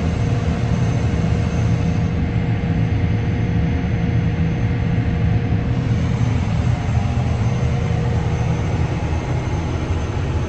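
Steady drone of a self-propelled crop sprayer's engine, heard from inside its cab as the machine drives along the rows spraying. The noise holds even throughout, with a faint steady whine above it.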